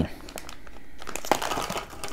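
Plastic candy bag crinkling as it is handled, with small irregular rustles and clicks.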